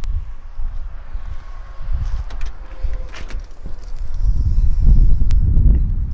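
Footsteps on gravel with wind rumbling on the microphone. The rumble is strongest near the end, and a few sharp clicks are heard.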